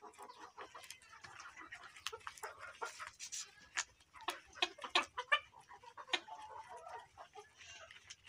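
A flock of Egyptian Fayoumi chickens clucking softly now and then, with scattered light clicks between the calls.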